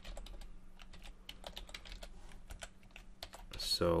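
Typing on a computer keyboard: an irregular run of light key clicks, several a second.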